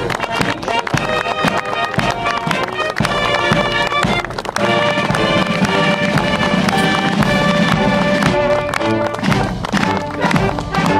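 Military marching band music: wind and brass instruments playing a tune over a steady beat.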